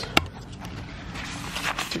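A single sharp click just after the start, then faint rustling and scuffing of a paper napkin being rubbed along a window frame.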